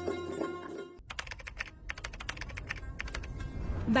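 Computer keyboard typing: a quick run of key clicks for about two seconds. It follows a short stretch of instrumental music that cuts off abruptly about a second in.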